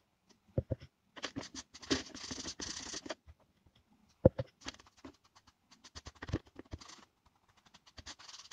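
A sponge rubbed on a roughly sanded wood board, a scratchy scrubbing for about two seconds, amid small clicks and knocks from handling a stain bottle and its cap, with a sharper knock about four seconds in.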